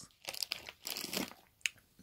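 A few short crinkling, rustling noises close to the microphone, with one sharp click near the end.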